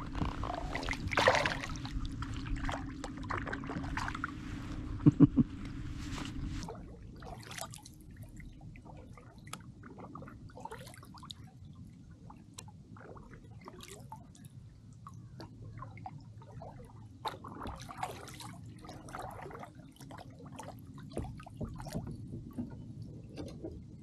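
Water splashing and dripping around kayaks, with small drips and splashes from paddle blades. It is louder for the first several seconds, with a couple of sharp splashes about five seconds in, then quieter with scattered drips.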